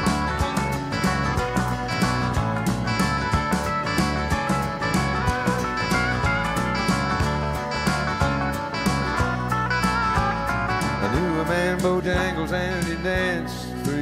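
Live country band playing an instrumental passage: a hollow-body electric guitar plays lead over bass and a steady drum beat. Near the end, bending notes come to the fore.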